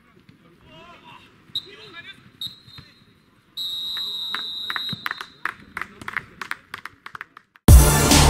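Football referee's whistle: two short blasts, then a long blast of more than a second, overlapped by a quick run of sharp claps or knocks. Distant shouts are heard before the whistle, and loud music starts just before the end.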